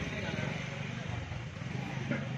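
Indistinct background voices with a motor vehicle engine running.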